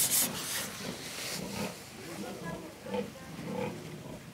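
Pigs grunting in a pen, with a loud hissing spray that cuts off just after the start.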